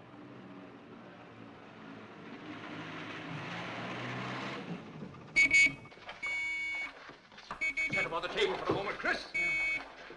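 A motor lorry's engine running, drawing nearer and growing louder over the first five seconds. After a cut, a shrill, alarm-like tone sounds in four short blasts, with voices shouting between them.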